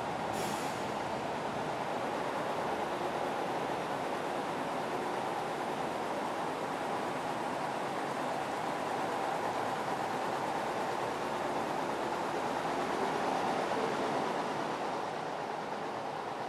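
Heavy military trucks hauling trailers drive past in a column, a steady engine and tyre noise that swells a little near the end.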